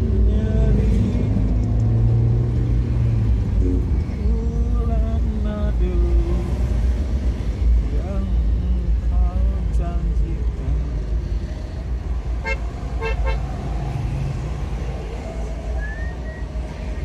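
Road traffic heard from a moving vehicle: a steady low engine and road rumble, with short horn toots over it and a quick run of beeps about twelve seconds in.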